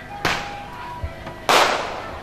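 Two firecracker bangs, the first about a quarter second in and a louder one about a second and a half in, each with a short echoing tail, over faint music.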